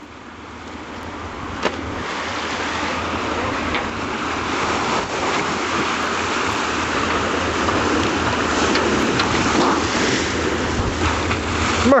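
A scuttled boat's hull going under: water rushing and churning over it and trapped air surging up through the surface as it floods. It is a steady rushing wash that grows louder throughout.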